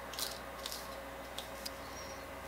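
Faint swishes and a few soft ticks of a fine-tooth comb drawn through wet hair coated in a leave-in treatment, over a low steady room hum.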